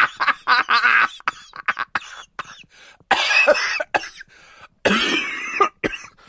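Short bursts of wordless human vocal sounds, loud and broken by brief gaps, with bending pitch like a voice.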